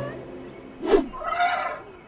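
Cartoon sound effects: a soft thud about a second in, followed by a brief rising-and-falling vocal call from the cartoon elephant character.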